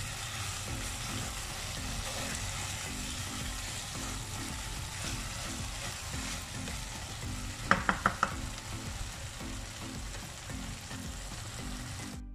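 Chicken pieces sizzling in ghee as a spatula stirs and turns them in a wok, with the masala being fried down dry. About two-thirds of the way through comes a quick run of four sharp clicks.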